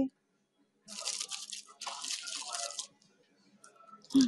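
Crinkling and rustling of a wrapped sweet's wrapper as it is picked up and handled, in two bursts of about a second each.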